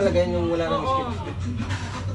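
A person's voice, with pitch that rises and falls, over a steady low hum.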